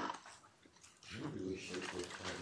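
A person's long, steady hum ("mmm") that begins about a second in.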